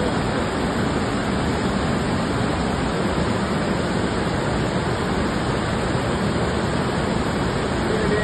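Rain-swollen hill stream in spate, white water rushing over boulders in a steady, loud, unbroken noise.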